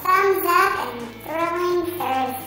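A child's voice singing two drawn-out notes over background music.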